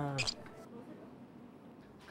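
A man's drawn-out "eo" ending with a short breathy hiss about a quarter second in, then quiet room tone.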